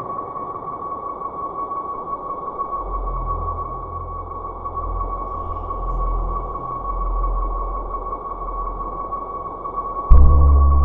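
Ambient drone soundtrack: a steady high sustained tone over a soft hiss, with a low pulsing rumble that swells in and out from about three seconds in.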